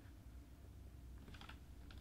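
Near silence over a low steady hum, with a few faint computer clicks: a small cluster about halfway through and one more near the end.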